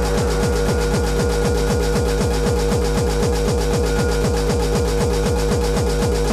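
Hardcore techno in a DJ mix: a fast kick drum, about three beats a second, each beat dropping in pitch, under a steady held synth note.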